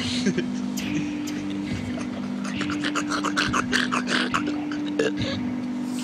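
A man's voice making rapid, stuttering vocal sounds and then a laugh near the end. Under it, low held music notes shift in pitch now and then.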